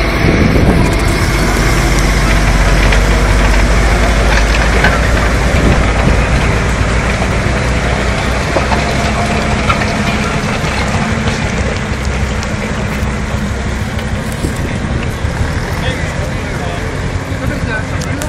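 Tractor engine running steadily, pulling a plough through the field, slowly getting quieter over the second half.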